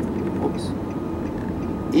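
Steady low rumble of engine and road noise heard inside a moving car.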